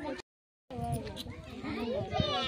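People talking, with voices overlapping, broken by about half a second of dead silence just after the start before the talk resumes.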